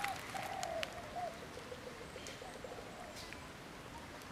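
Faint animal calls: a few arching, pitched notes in the first second, followed by a quick run of short repeated notes that fades out.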